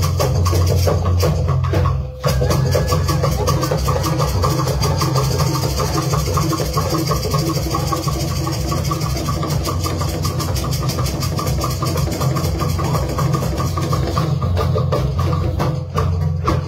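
Dance music with dense, fast drum and percussion strikes over a heavy, steady bass line; it dips briefly about two seconds in, then carries on at the same level.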